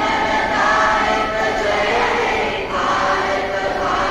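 A large group of schoolgirls singing together in unison, long held notes that shift every second or so.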